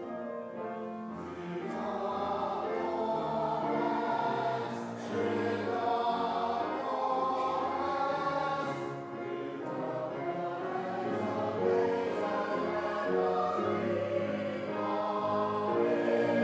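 Mixed-voice church choir singing a hymn or anthem in harmony, several voices holding notes together.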